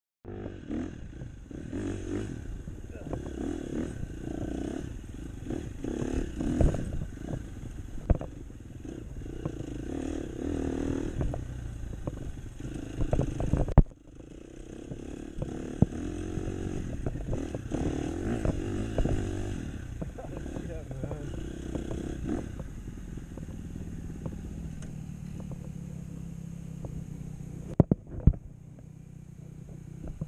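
Dirt bike engine running and revving up and down over a snowy trail, with knocks and clatter from the bike over bumps. The engine settles to a steady low speed in the last few seconds, broken by a couple of sharp knocks.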